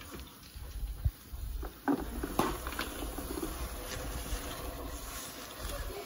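Low rumble of a hand-held phone camera being moved about, with a few light clicks and taps in the first half.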